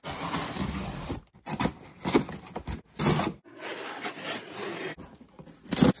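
A cardboard shipping box being opened: a blade cutting through packing tape, then irregular scraping and rubbing of cardboard as the flaps are opened and the contents are pulled out.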